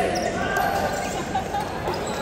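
Sports shoes squeaking on an indoor court floor, with players' voices echoing in a large hall.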